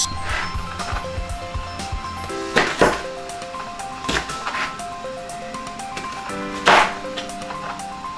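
Kitchen knife slicing an onion on a plastic chopping board: several sharp knocks of the blade hitting the board, over background music with a plucked melody.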